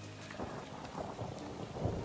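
Steady rain falling, with a low rumble beneath it, from a film's soundtrack.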